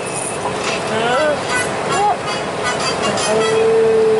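Cabin noise of a moving bus: a steady road and engine rumble, with a steady whine coming in about three seconds in. Brief fragments of passengers' voices are heard in the first half.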